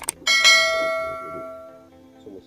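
A mouse click, then a single bell strike that rings out and fades over about a second and a half: the notification-bell sound effect of a subscribe-button animation, marking the bell icon being clicked.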